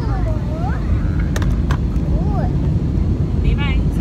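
Steady low rumble of a jet airliner's cabin in flight, with a voice briefly making swooping sounds and a few light clicks over it.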